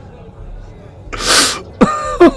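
A man's voice: a quiet pause, then one sharp, noisy breath about a second in, like a sigh or sneeze. A brief voiced sound falling in pitch follows near the end.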